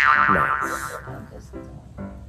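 A singing voice swoops up into a high note, holds it with vibrato and lets it fade over about a second. Soft keyboard background music plays under it.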